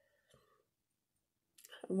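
A pause in a woman's speech: near silence, then a few small mouth clicks as she gets ready to speak, and her voice comes back in at the end.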